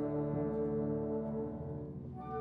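Concert wind band holding a sustained low brass chord, which thins out and fades near the end.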